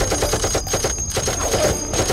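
Belt-fed machine gun sound effect in a film soundtrack: a rapid rattle of about a dozen strokes a second for roughly the first second, under a high tone held in the score.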